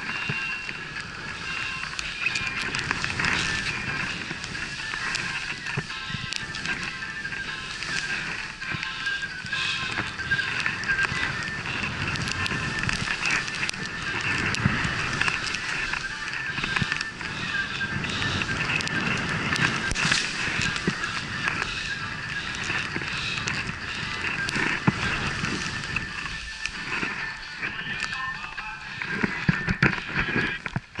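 Skis running and turning through deep powder snow, with wind rushing over the helmet-mounted camera's microphone and a steady high whistle-like tone.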